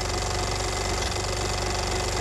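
Film projector running: a steady, rapid, even mechanical clatter with a hiss of film noise behind it, as over a film-leader countdown.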